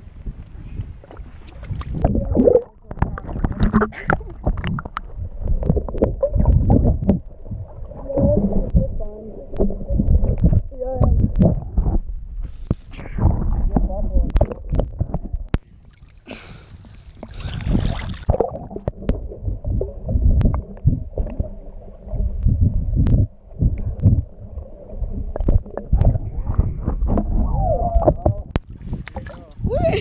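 Lake water sloshing and gurgling against a GoPro held at the waterline, muffled as waves wash over the camera, in irregular surges with a few brief dropouts.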